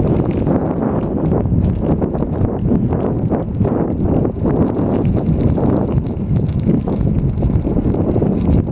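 Loud, steady wind buffeting on a moving camera's microphone, with a constant rough flutter.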